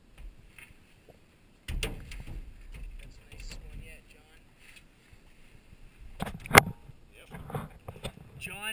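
Waterproof action-camera housing handled in and out of lake water: muffled water noise and rumbling from about two seconds in, with scattered knocks and one sharp, loud knock on the housing a little before the end.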